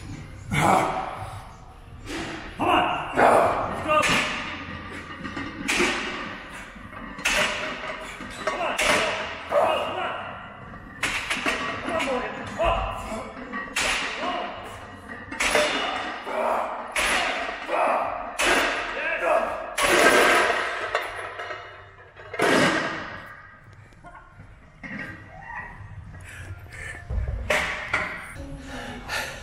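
A heavily loaded barbell thumping and knocking about every second or so through a set of bent-over barbell rows.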